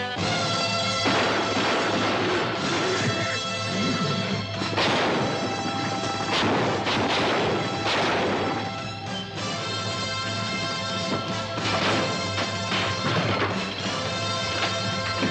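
Film score music holding sustained tones, overlaid by repeated crashing and smashing sound effects of a brawl, coming in clusters several times.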